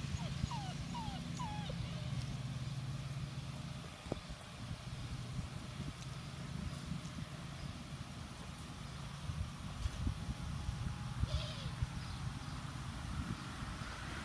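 Six-week-old Doberman puppies giving a few short, high whimpering yips in the first two seconds and one more about eleven seconds in. Under them are a steady low hum for the first few seconds and low wind rumble on the microphone.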